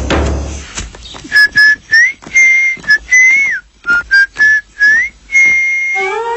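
A whistled tune: a run of short, clear notes with brief gaps between them, some sliding upward. The score music fades out just before it.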